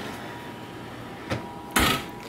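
Electric oven door being shut: a small knock about a second and a half in, then a short, louder thump as the door closes near the end.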